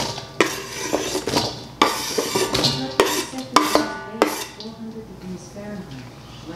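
A chef's knife scraping chopped sweet onions off a wooden cutting board into a stainless steel mixing bowl. There are several sharp knocks and clatters of the blade and board as the pieces drop into the bowl.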